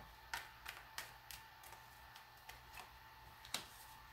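Quiet room tone with a handful of faint, scattered clicks and taps from tarot cards being handled, the sharpest one near the end as a card is laid down on the cloth.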